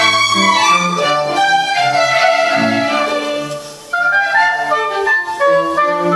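Chamber string orchestra playing classical music with a solo clarinet, held string chords under a woodwind melody. The music dips briefly a little past the middle and then picks up again.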